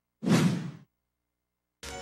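A single whoosh sound effect, about half a second long, a moment in, accompanying a TV station's animated logo bumper that leads into a commercial break.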